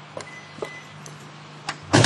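Footsteps on brick steps, heard as a few sharp separate clicks over a steady low hum, then a loud sudden burst of noise near the end.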